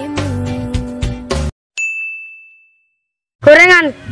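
Background music cuts off, then a single high bell-like ding rings out and fades over about a second. Near the end a boy's voice begins speaking.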